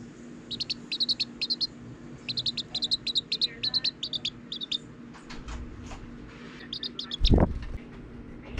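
Serama bantam chick peeping: runs of quick, short, high-pitched cheeps, several to a run, with brief gaps between. Near the end comes a single loud low thump.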